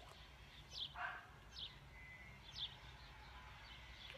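Faint bird chirps: short, high, falling calls repeating roughly once a second.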